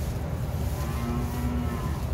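A young calf gives one short, steady moo lasting about a second in the middle, over a continuous low rumble on the microphone.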